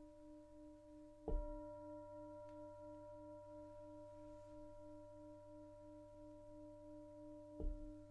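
Singing bowl ringing with a soft, wavering tone, struck again about a second in and once more near the end, each strike bringing out fresh higher overtones.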